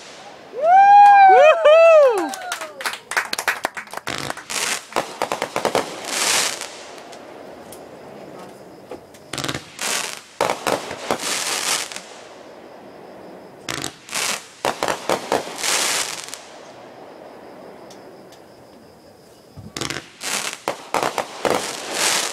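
Aerial fireworks going off in clusters of rapid crackling bangs about every four to five seconds, with quieter gaps between. About a second in, a loud pitched sound rises and falls several times.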